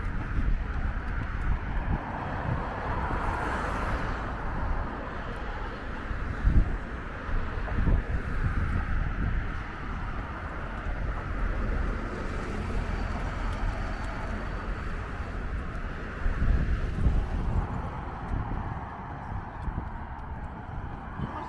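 Steady road traffic passing on a city bridge, an even hiss of tyres and engines, with a low rumble underneath that swells a few times.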